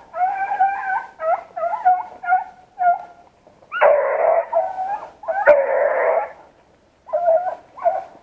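Beagles baying in a string of short, pitched yelping calls, broken by two harsher, louder bays near the middle; a single sharp click sounds about five and a half seconds in.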